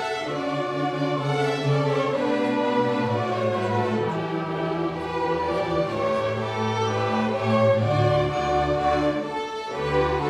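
Middle school string orchestra of violins, cellos and double basses playing a piece live, with held melody notes over a moving low line from the cellos and basses.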